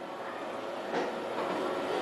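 Quiet room tone in a hall: a faint, even background noise that grows slightly louder.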